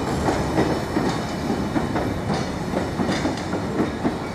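Yeoman stone hopper wagons of a freight train rolling past: a steady rumble of wheels on rail with repeated, irregular clacks.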